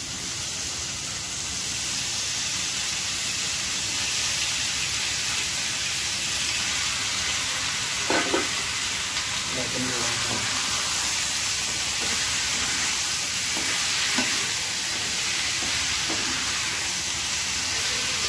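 Raw chicken pieces frying in hot oil in a wok-style pan, a steady sizzle as they start to cook, with the scrape and occasional brief knock of a wooden spatula stirring them.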